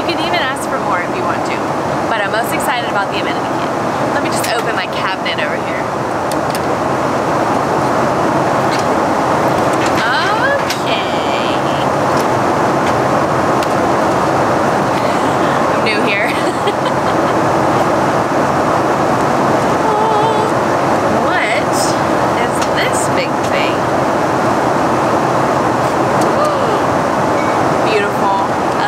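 Steady airliner cabin noise, with short rustles and clicks of amenity-kit packaging being opened and handled.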